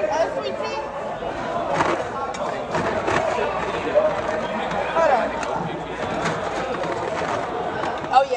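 Indistinct chatter of many voices talking at once, with a few sharp clicks or knocks now and then.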